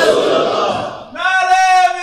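Slogan chanting from a religious gathering: the audience shouts a reply together, and about a second in a single man's voice starts a long, held shouted call.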